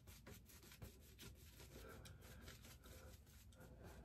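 Faint rubbing of a shaving brush working lather over a stubbled cheek, in a series of short strokes.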